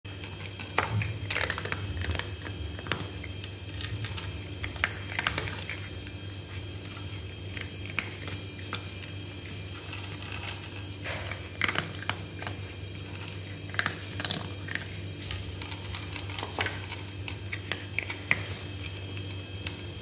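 Two cats eating dry kibble: irregular, crisp crunching clicks as they chew, over a steady low hum.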